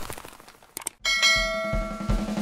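Mouse-click sound effects from a subscribe-button animation, then about a second in a bright bell chime rings out with several steady tones, like a notification bell. Low drum beats of intro music start under it near the end.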